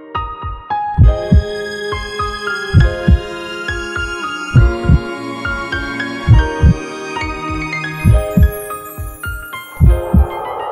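Heartbeat sound effect, a low double thump (lub-dub) repeating about every 1.7 seconds, under soft keyboard music with sustained notes.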